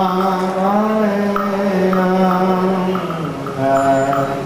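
A Buddhist monk chanting in one held, slowly wavering voice, dropping to a lower pitch about three seconds in.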